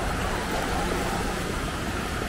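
Steady open-air beach ambience: an even wash of noise with a low rumble underneath and no distinct events.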